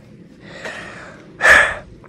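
Snow shovel scraping and shoving snow along the top of a wooden fence: a soft swish, then a louder, sharper scrape about a second and a half in.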